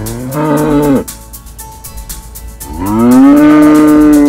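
Holstein cow mooing twice: a short moo in the first second, then a longer, louder one beginning near the end that holds steady. She is calling for her owner to come out and give her attention.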